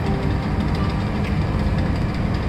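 Diesel generator set running steadily, an even low drone.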